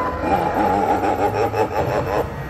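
A Halloween animatronic's electronic voice: a distorted, rapidly wavering spooky sound over a steady low hum.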